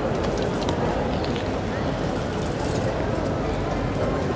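Street ambience: a steady wash of background noise with indistinct voices of passers-by, and no single sound standing out.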